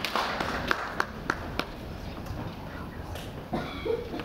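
Audience applause dying away: a few scattered hand claps in the first second and a half, then low room noise.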